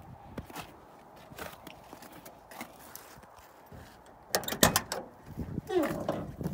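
Driver's door of a 1982 Ford F-150 pickup being opened: a loud clunk of the latch and handle about four seconds in, then a short falling creak as the door swings open near the end.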